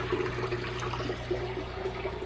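Water from a hose with a red ball valve, opened only a little, pouring into a partly filled aquarium: a steady splashing flow with a low steady hum beneath it.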